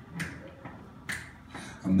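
Finger snaps keeping time for the count-in, two of them about a second apart. Near the end a man's voice starts singing with the band.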